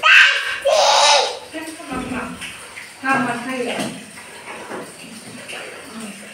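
Short stretches of a person's voice, with two loud breathy hissing noises in the first second or so.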